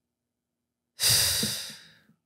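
A woman's long, heavy sigh into a close microphone, starting about a second in and fading out.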